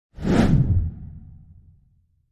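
A whoosh sound effect for an animated logo reveal, swelling in just after the start and fading out over about a second and a half with a deep, low tail.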